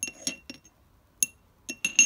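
A metal drill bit stirring coffee in a small ceramic ramekin, clinking against the bowl's sides with a bright ringing tone. A quick run of clinks, a single louder one in the middle, then several more near the end, the last the loudest.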